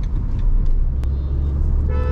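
Steady low road and engine rumble heard from inside the cabin of a Maruti Suzuki Vitara Brezza cruising at highway speed. A short steady tone comes in near the end.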